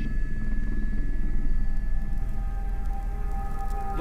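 Steady low rumble of the Airbus H125 helicopter's rotor and engine heard from the cockpit, with background music of sustained tones growing louder over it from about halfway through.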